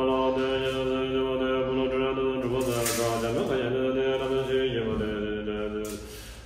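A Buddhist monk chanting a prayer to the Buddha, one man's voice on long held notes at a nearly unchanging pitch, with a brief slide in pitch midway; the chant tails off just before the end.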